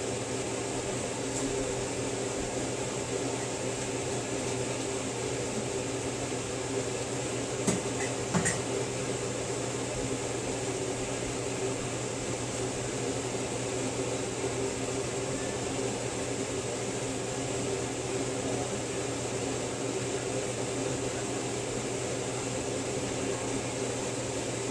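Steady hum of a running kitchen appliance fan, even throughout, with two faint light taps about eight seconds in.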